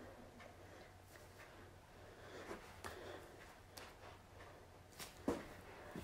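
Quiet room with a steady low hum and a few scattered soft knocks and thumps, the loudest about five seconds in, from a person coming down from a handstand and moving about on the floor.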